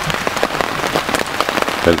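Rain pattering on a tent, heard from inside: a dense patter of many separate drop hits.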